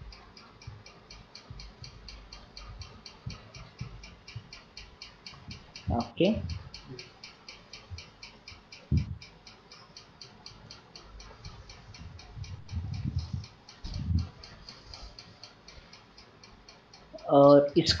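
Steady, rapid ticking, several ticks a second, with a few brief low sounds breaking in about six and nine seconds in.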